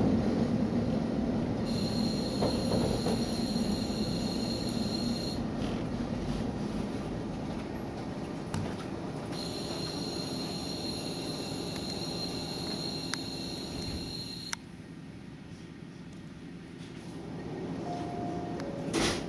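Inside a diesel railcar braking to a stop at a station: the low running rumble fades as it slows, with two spells of high, steady brake squeal. The sound drops off suddenly about three-quarters of the way through as the train comes to a halt.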